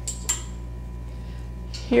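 Two light metallic clinks in quick succession, as a garment on a clothes hanger is hung up, over a steady low hum.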